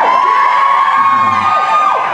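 A man's voice singing one long high falsetto note, slid up into just before and dropping away near the end.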